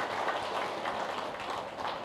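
A seated audience applauding, a steady clapping of many hands.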